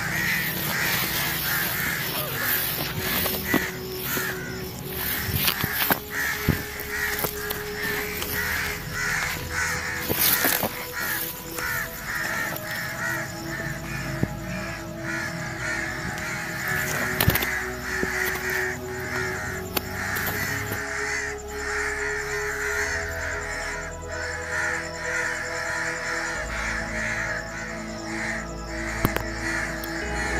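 Bird calls repeating throughout, over background music.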